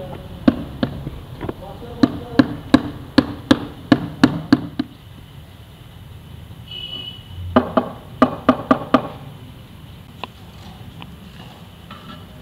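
Sharp taps on a ceramic floor tile as it is knocked down and bedded into wet mortar: a run of about a dozen, two or three a second, then a second run of about six taps some seven and a half seconds in.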